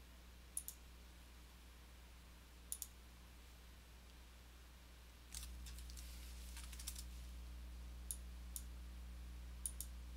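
Faint computer mouse clicks, several of them in quick pairs, scattered through a few seconds of near-quiet, over a low steady background hum that gets slightly louder about five seconds in.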